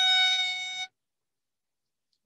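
A student's violin holding a bowed note at the end of a scale passage. The note fades slightly and then cuts off abruptly just under a second in, as heard over a video call.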